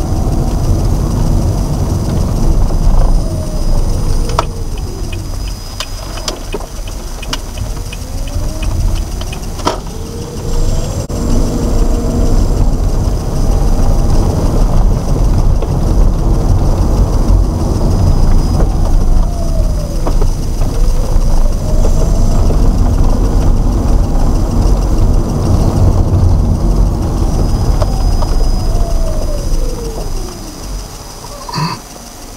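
Car driving, heard from inside the cabin: a steady engine and road rumble whose pitch climbs and falls over a few seconds at a time as the car speeds up and slows. A run of light, regular ticks is heard early in the stretch.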